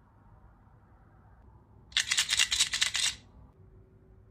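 A quick run of sharp, light plastic clicks and rattles, about a dozen in just over a second, starting about two seconds in, as a small plastic collectible figure is handled.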